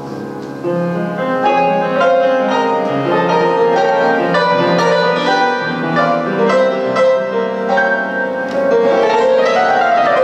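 Jazz trio playing a slow tune, an acoustic upright piano carrying the melody over string bass; the playing grows louder about a second in.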